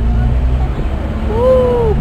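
Steady low rumble of a car's engine and tyres, heard from inside the moving car's cabin. A short, drawn-out voice sound comes in the second half.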